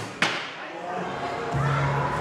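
A crossbow bolt strikes the wooden target box with a single sharp crack about a quarter second in, just after the crossbow's release. Voices rise near the end.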